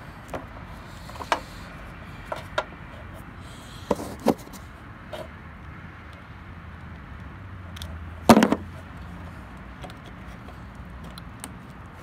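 Scattered clicks and knocks of plastic parts as headlight wiring connectors are plugged into the harness and the headlight housing is handled, over a steady low background noise. The loudest knock comes about eight seconds in.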